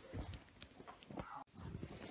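Irregular footsteps and soft knocks of someone moving about and handling things, broken off by a sudden cut about one and a half seconds in, after which the noise is louder.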